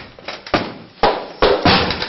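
A few sharp knocks or hits, about five in two seconds, irregularly spaced and each with a short ring after it.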